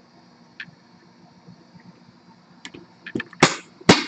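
A hard-shell BCW card case being handled: mostly quiet room hum, then from about two and a half seconds in a run of clicks and clacks, with two louder sharp knocks near the end.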